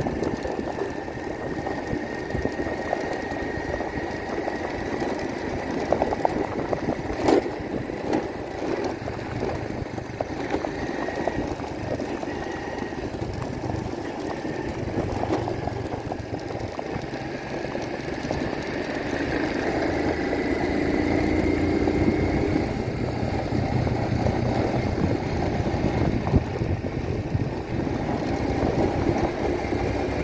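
A motor vehicle's engine running steadily while on the move, with a faint high whine and a few sharp knocks. It grows a little louder in the second half.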